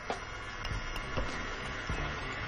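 Electric stand mixer running steadily, its wire whisk beating cake batter in a metal bowl, with a few faint clicks.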